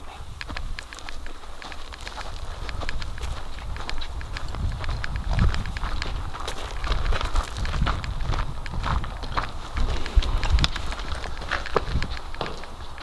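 Footsteps of people walking over dirt and rubble, irregular steps with scuffs, over a low uneven rumble from the moving handheld camera.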